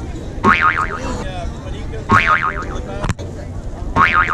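A repeating electronic warbling sound effect: a bright, quickly wobbling tone about half a second long, sounding about every second and three-quarters over crowd noise. A single sharp click comes about three seconds in.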